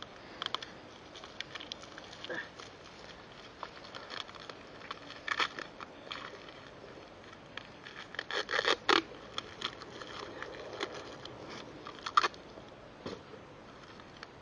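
Clear adhesive tape pulled off its roll in several short rips, the busiest run about eight to nine seconds in, with quieter handling rustle between. It is being wrapped around a forearm as a makeshift armrest for a metal detector.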